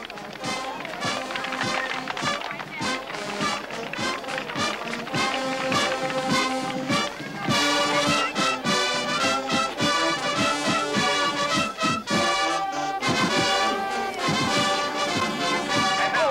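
Marching band playing as it passes, with brass horns over snare and tenor drums and cymbals. The brass grows louder and fuller about halfway through.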